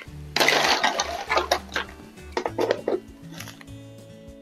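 Ice cubes clattering as they are scooped from a plastic container and dropped into a glass. The loudest rattle comes about half a second in, followed by a few separate clinks, over background music.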